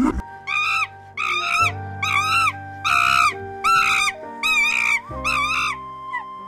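Cheetah chirping: a series of about seven short, high, bird-like chirps, each rising and falling in pitch, evenly spaced, over steady background music.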